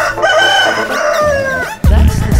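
A rooster crowing once, one long call that falls in pitch, heard in a break where the dub track's bass beat drops out; the beat comes back just before the end.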